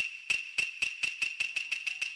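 Quick metallic ringing, like a small bell rung rapidly: sharp strikes about eight times a second over a steady high ringing tone.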